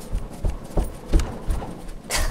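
Bare foot thumping on a carpeted floor in a series of short, dull knocks, about three a second, as a person hops and wobbles on one leg while losing balance.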